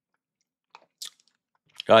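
Near silence broken by a faint, brief mouth noise from the man about a second in, then the start of speech at the very end.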